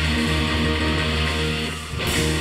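Live rock band with many electric guitars playing loud, sustained chords, briefly dropping out near the end before striking again.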